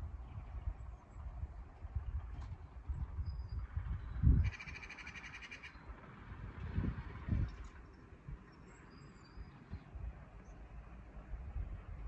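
Outdoor ambience with wind buffeting the microphone in low rumbles and gusts, the strongest about four seconds in. A bird calls once for about a second just after, and faint short chirps come now and then.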